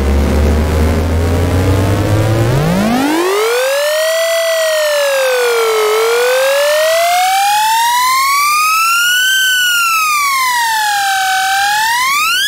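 Synthesized riser sound effect from a trap sample pack: a buzzy, bass-heavy tone holds low, then about two and a half seconds in glides upward and wavers up and down like a siren before sweeping steeply upward near the end.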